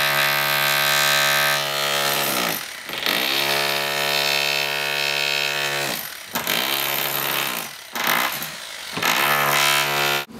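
Corded electric power tool cutting into stucco to break it out, its motor running at full speed with a steady high whine; it is let off and spins down, then spins back up, about three times.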